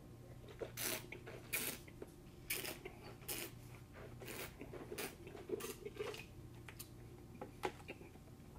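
A wine taster sipping red wine and swishing it around his mouth: a string of short, faint, wet slurping and swishing sounds, roughly one a second.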